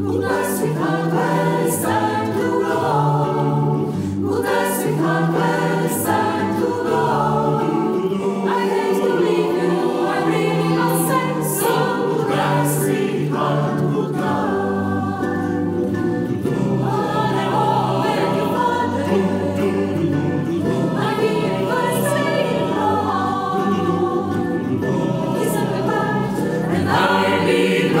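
Mixed choir of sopranos, altos, tenors and basses singing in close harmony, with sustained chords over a bass line. Sharp 's' sounds come through together, and the sound swells a little near the end.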